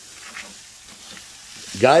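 Steaks sizzling on a hot grill grate, a steady hiss.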